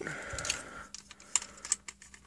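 Hard plastic parts of a Transformers action figure being handled and pushed together: a short rubbing of plastic on plastic, then a few light clicks as pieces tab into place.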